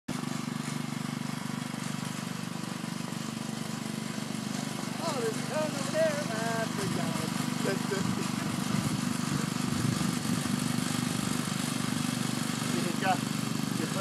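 Go-kart engine running steadily, a continuous hum that wavers a little partway through. Voices talk over it about five seconds in and again near the end.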